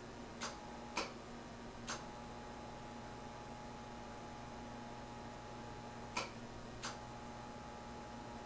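Sharp relay clicks as the transmitter is keyed on and off five times while the linear amplifier is tuned. A faint steady tone sounds during each keyed stretch, over a low steady hum from the amplifier.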